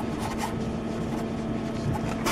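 Threaded lens holder tube on a CO2 laser cutter's cutting head being unscrewed by hand, giving light rubbing and scraping of the threads over a steady hum.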